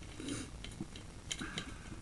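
Scattered light clicks and short scrapes from a sewer inspection camera's push cable being worked against a root blockage that the camera head cannot get past.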